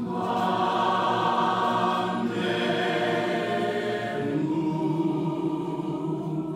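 Mixed church choir of women's and men's voices singing a hymn, holding long chords. The singing thins and softens about four seconds in.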